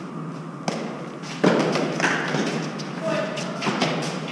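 Eton fives ball struck by gloved hands and bouncing off the court's walls and floor during a rally: a sharp knock about two-thirds of a second in, the loudest thud about a second and a half in, then several more knocks.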